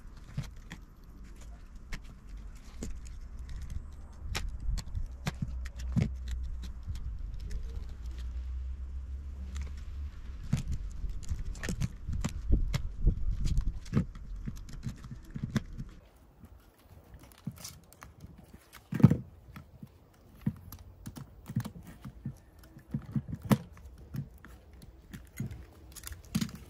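Scattered clicks, taps and scrapes of a utility knife trimming bicycle inner-tube rubber at the base of a hammer head, with the steel head knocking against the wooden board; one louder knock past the middle.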